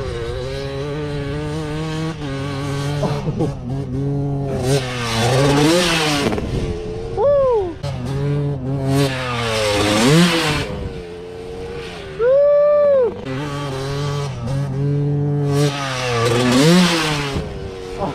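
Dirt bike engine idling steadily close by, with several quick revs that rise and fall, while a Suzuki RM250 two-stroke is ridden hard and jumped over the dunes. Its sound swells into loud rushes three times.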